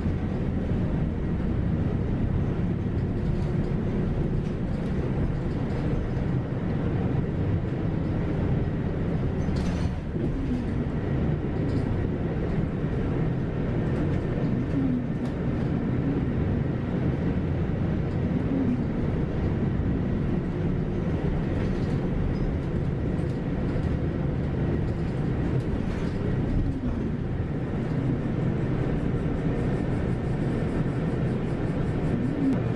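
Steady engine and road noise inside a moving city bus, with a faint whine that rises and falls briefly several times.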